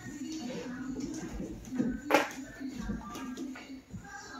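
Indistinct voices in the background, with one sharp knock or click about two seconds in.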